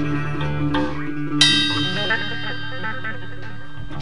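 Electric guitar and drum kit played loosely while the trio warms up before a count-in. About a second and a half in, a loud hit rings out and slowly dies away.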